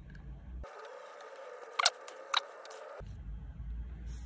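Fountain pen being filled from an ink bottle by twisting its converter: faint handling with two short squeaks, the first about two seconds in and the second half a second later.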